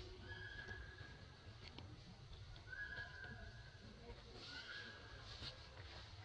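Three faint, drawn-out macaque calls, each under a second and held at an even pitch, spaced a couple of seconds apart, with a few light rustling clicks between them.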